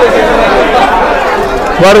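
Several men talking at once in a busy market hall, their voices overlapping into chatter; one voice comes through clearly near the end.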